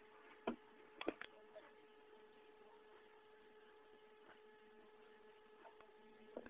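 Faint, steady electrical hum with a few short clicks about half a second and a second in.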